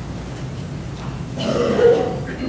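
Steady low room noise, then a short, louder vocal sound like a throat being cleared near the end.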